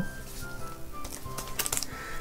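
Soft background music in short held notes, with a few brief clicks near the end.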